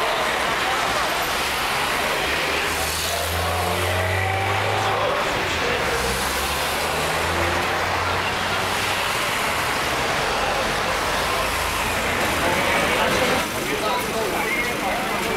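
Crowd chatter with voices overlapping, over a low engine hum from a motor vehicle that is strongest through the first half.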